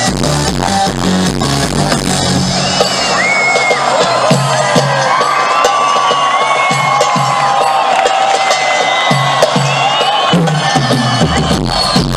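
Live pop concert heard from within the audience: a crowd cheering, shouting and whistling over the band's music. The deep bass beat drops out about half a second in and comes back near the end.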